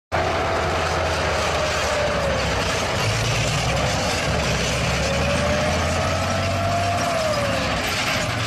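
Tank driving: its engine running with a deep, steady sound and its tracks clattering, with a thin squeal that wavers up and down in pitch.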